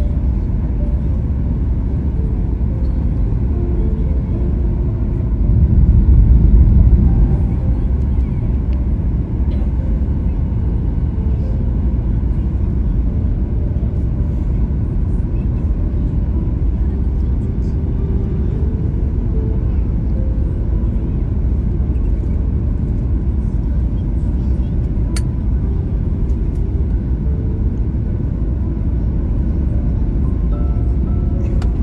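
Cabin noise of a Boeing 737-8 in flight on approach: a steady low rumble of its CFM LEAP-1B engines and the airflow, which swells louder for a couple of seconds about six seconds in.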